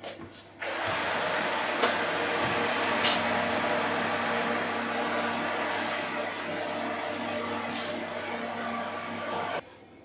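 A steady mechanical running noise with a fixed hum, from an open electric oven, while a metal roasting tin of crème brûlée dishes in a water bath is slid into it with a few light knocks. The noise starts suddenly just after the start and cuts off suddenly near the end.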